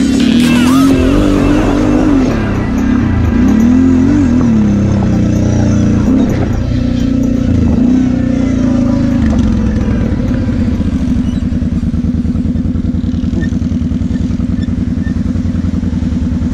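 Kawasaki KFX 700 V-Force quad's V-twin engine revving up and down under throttle for about ten seconds, then settling to a steady low idle as the quad comes to a stop.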